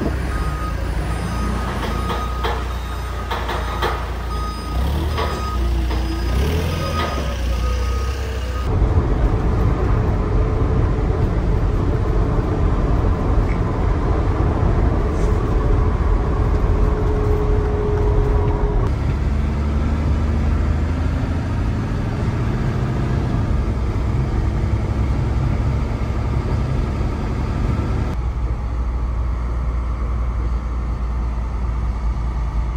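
Propane forklift working in a truck's cargo box, its reversing alarm sounding repeated short beeps over an engine that rises and falls in pitch. About nine seconds in, it gives way to the steady engine and road noise of a box truck heard from inside its cab while driving.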